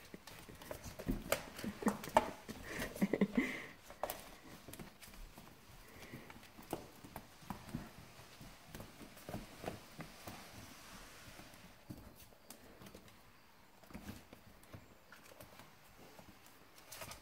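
Irregular clicks and taps of a flat mop head being pushed over a hardwood floor with a puppy riding on it, mixed with the puppy's claws on the boards. The tapping is busiest in the first few seconds, where a brief voice-like sound also comes in.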